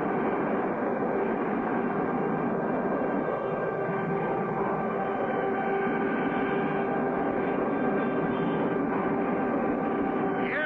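Steady drone of a plane's engine in flight, with a constant hum running through it.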